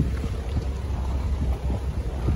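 Wind buffeting the phone's microphone: a continuous low rumble with uneven gusty thumps.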